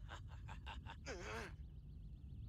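Faint vocal sounds: a quick run of short breathy pulses, then about a second in a brief sighing cry that rises and falls in pitch.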